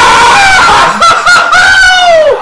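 A man's long, loud, high-pitched scream of excitement. It breaks briefly about halfway through and starts to fall in pitch near the end.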